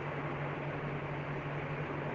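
Steady hiss with a low, even hum underneath: the background noise of the voice recording.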